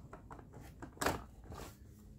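A two-pin electrical plug pushed into a socket, with one short click about halfway through and faint handling rustle around it.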